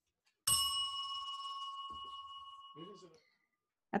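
A small bell struck once, ringing with several clear high tones that fade away together over about two and a half seconds.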